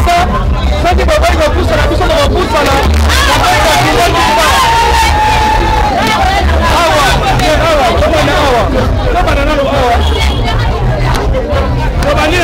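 Loud crowd hubbub: many voices talking and calling over one another at once, over a low rumble.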